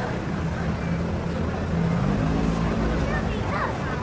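Busy street ambience: steady crowd and traffic noise with a low rumble and a low hum, and faint voices near the end.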